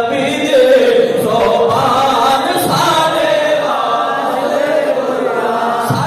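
A man's voice chanting devotional verse in a sung, melodic style into a microphone, with long held notes that slide and waver in pitch.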